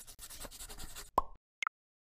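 Short electronic sound effect: a faint crackly texture, then a brief tone a little over a second in and a quick double pop just after.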